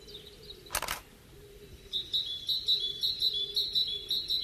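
A small bird singing a quick string of high chirps on two alternating notes, about four or five a second, beginning about halfway in. Just before one second in there is a short sharp noise.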